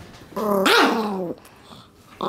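Yorkshire terrier giving one growl of about a second, rising and falling in the middle, while guarding a dog biscuit from a person leaning in to beg for it.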